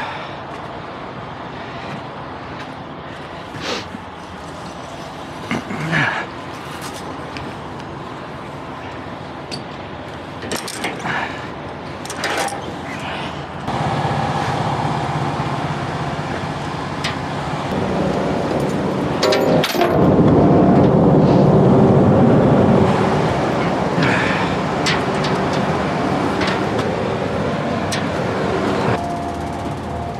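Scattered metal knocks and clanks while a cargo net and steel cable are handled over a loaded trailer. About halfway through a heavy engine starts running and keeps going, loudest for a few seconds in the second half.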